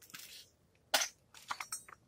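Handling noise: a few short rustles and knocks as aluminium engine heads in a cardboard box are touched and moved.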